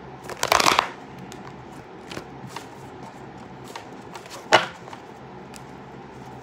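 A deck of tarot cards being shuffled by hand: a loud rush of riffling cards about half a second in, then soft slides and taps of the cards, and a second short, sharp burst of card noise about four and a half seconds in.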